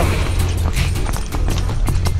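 Pony hooves clip-clopping on a dirt trail while the pony is ridden, an irregular run of clicks and knocks over a steady low rumble.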